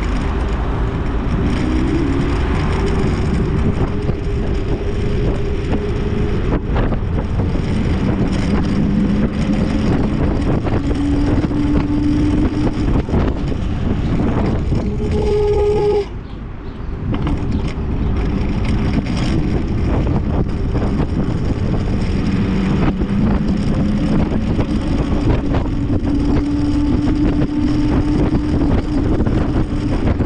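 Wind buffeting the microphone and road rumble from an MS Energy X10 electric scooter riding along a street, with a faint low motor whine that drifts up and down in pitch. About sixteen seconds in the noise briefly drops as the scooter slows, then builds again.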